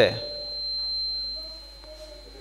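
A man's voice speaking into a microphone ends a phrase at the very start, then pauses. Through the pause there is a faint, steady high-pitched tone and a little room sound.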